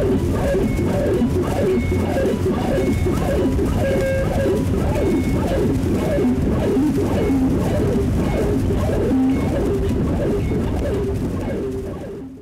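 Music with a steady, dense texture and short pitched notes repeating over and over; it fades out at the very end.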